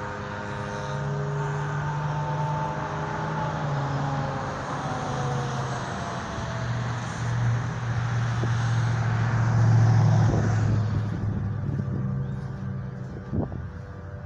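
A motor vehicle's engine droning, with slowly falling tones, growing louder to its peak about ten seconds in and then fading away, like a vehicle passing on the road. A sharp click comes near the end.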